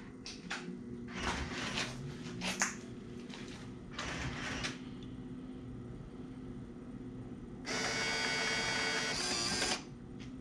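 A combo vending machine powering up. A few knocks and rustles come in the first few seconds. Near the end, the dollar bill acceptor's motor whirs steadily for about two seconds as it cycles at power-up, then stops suddenly.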